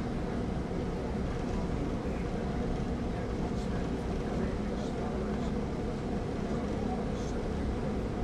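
Steady low drone of an airport passenger bus running, heard from inside its cabin, with faint talk among the passengers.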